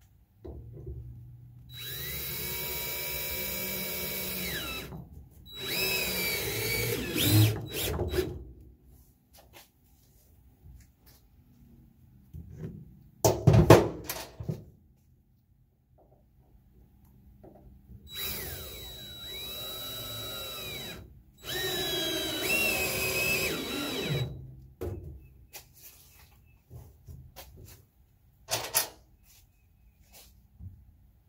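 Cordless drill driving long exterior screws into pressure-treated 2x4 lumber, in four runs of about three seconds each, two pairs far apart, the motor's whine sagging in pitch as each screw bites. A single sharp knock, the loudest sound, falls midway between the pairs.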